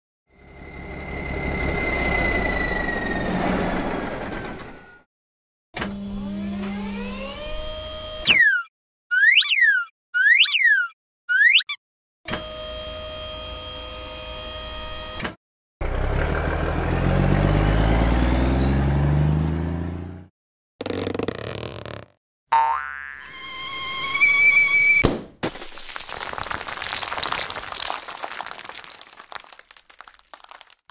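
A run of cartoon sound effects: a falling whistle, a rising glide, four quick springy boings about a second apart, a steady whirring tone, then a low toy-truck engine rumble. Near the end comes a long crumbling crash as a cartoon egg shatters into pieces.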